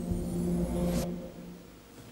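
Music-video intro sound effect: a low steady hum under a rising whoosh that cuts off sharply about a second in, leaving a low rumble that fades away.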